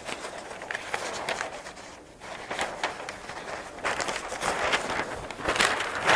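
Large sheet of thin Kitakata paper rustling and crackling irregularly as it is flexed and handled, with a quieter spell about two seconds in.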